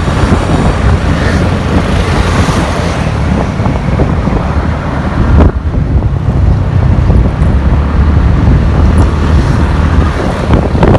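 A moving road vehicle running, with its engine and road rumble mixed with heavy wind buffeting on the microphone; a brief knock about five and a half seconds in.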